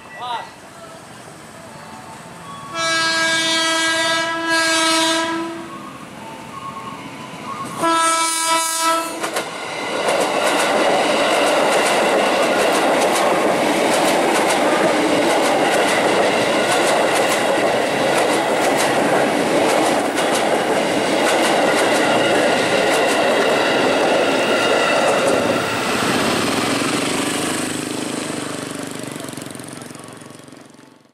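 Electric commuter train (KRL Commuter Line, ex-JR 205 series) sounding its horn, a long blast about three seconds in and a shorter one a few seconds later. Then a train passes close by with wheel clatter over the rail joints, loud and steady, fading away near the end.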